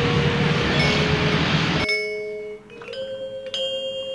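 Balinese gamelan angklung music: struck bronze metallophone notes ringing and overlapping. For the first two seconds it sits under a loud rushing noise of a car driving, which cuts off suddenly and leaves the gamelan clear.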